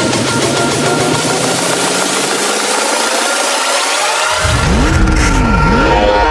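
Electronic dance music build-up: a synth sweep rising in pitch over a swelling wash of noise, with the bass dropped out. About four seconds in, heavy bass comes back with a synth note that swoops down and up in pitch, leading into the drop.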